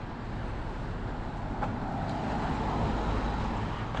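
Road traffic: a car passing on the street, its tyre and engine noise building gradually to a peak about three seconds in, then easing slightly.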